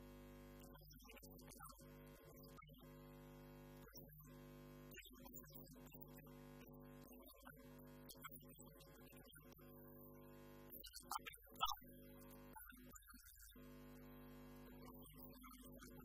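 Near silence: a faint steady hum, with one short click about two-thirds of the way through.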